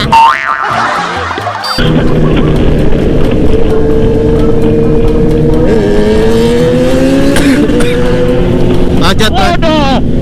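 A short boing-like edit sound effect in the first two seconds, then a sport motorcycle's engine running steadily while riding, its pitch climbing between about six and seven seconds as it accelerates and then dropping back.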